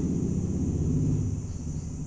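Steady low background rumble with a faint high hiss and no speech, dropping a little in level shortly after the middle.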